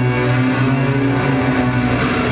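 Live metal band playing: distorted electric guitar and keyboards holding sustained chords over a steady low drone.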